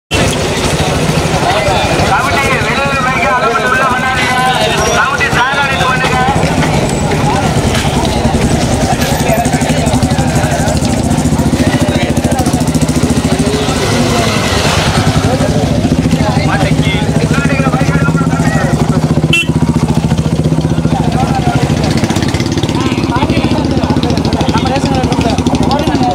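A motorcycle engine running steadily, with men's voices talking over it.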